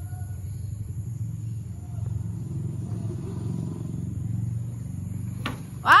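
Low steady rumble, a little louder in the middle, with no clear source.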